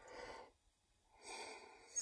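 A man breathing out twice, faint and breathy, about a second apart: a short breath, then a slightly longer one.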